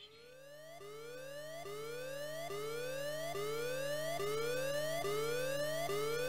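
Electronic synthesizer tone gliding upward over and over, about one rise every 0.85 seconds, over a steady low hum. It fades in over the first two seconds.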